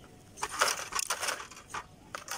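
Homemade pump drill turning a bit into a rusty sheet-metal plate: a grinding scrape with each downward pump of the wooden crossbar. There is one long scrape about half a second in, then a short one near the end.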